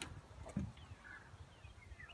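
Faint bird calls: a few short chirps and whistles, with two sharp clicks near the start, the first right at the start and the second about half a second in.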